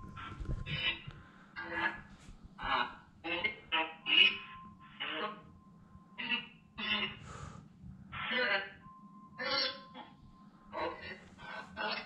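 Spirit box app on a phone sweeping through snatches of radio: a rapid string of chopped voice and music fragments, each cut off after a fraction of a second, with a steady high tone that comes and goes between them.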